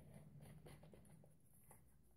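Near silence with faint clicks and scratchy handling sounds of a small plastic bottle and its cap being worked by hand.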